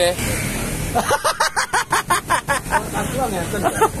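Men talking in quick syllables, over the steady noise of passing road traffic that is most noticeable in the first second.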